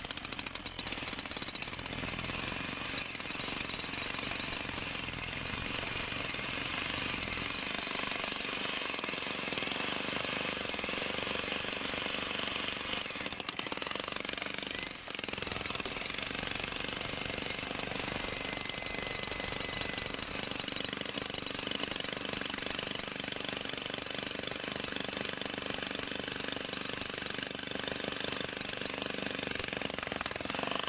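Milwaukee M18 Fuel cordless rotary hammer in chisel mode, hammering continuously into a thick, hard old concrete foundation reinforced with steel mesh, breaking it out.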